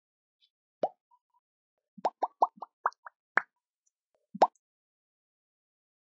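Cartoon 'bloop' pop sound effects on an animated end card: a single pop, then a quick run of about seven, and a last, loudest one past four seconds in. Each is short and sweeps upward.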